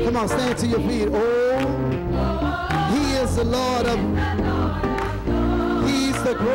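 Live gospel music: a male soloist singing with a wavering, bending voice over a choir and a band, with a steady bass underneath.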